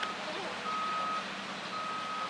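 A construction vehicle's reversing alarm: a steady single-pitched beep, each about half a second long, repeating about once a second over the general noise of a construction site.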